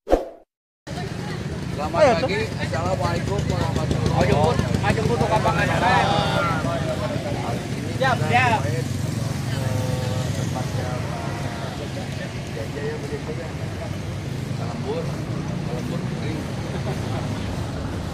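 Voices of a group of people chatting outdoors, over a steady low hum.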